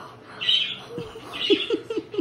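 A young boy sobbing with happy tears: gasping, breathy breaths and, in the second half, a quick run of short, falling whimpers.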